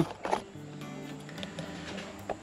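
Quiet background music with a few sustained notes.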